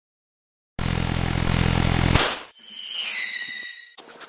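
Loud intro sound effect: a sudden burst of noise over a deep hum, starting under a second in and lasting about a second and a half, then a high tone that slides down in pitch and fades.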